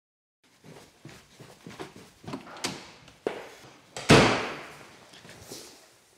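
Irregular knocks and rustling handling noises close to the microphone, with one loud thump about four seconds in that rings on briefly in a small room.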